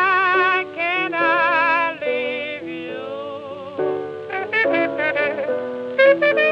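Cornet and piano blues on a 1926 record. The cornet holds notes with a wide vibrato, then turns to quicker, short notes about four seconds in, over steady piano chords.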